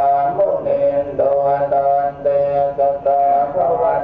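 Buddhist chanting: voices chanting in unison on a few held pitches that step up and down, running continuously.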